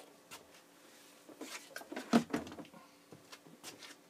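Scattered light knocks, clicks and rustles of things being handled on a workbench, busiest about halfway through, over a faint steady hum.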